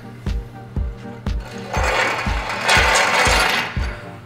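Background music with a steady beat about twice a second. In the middle, a loud rasping, ratcheting mechanical noise lasts about two seconds as a tall telescoping shop support stand is collapsed and taken down from under the car.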